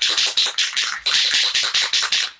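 Aerosol spray paint can being shaken hard, its mixing ball rattling in a fast, even rhythm to mix the paint before spraying.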